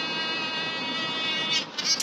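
A steady, high-pitched buzz with many overtones, holding one pitch, that stops about one and a half seconds in, followed by a few brief clicks.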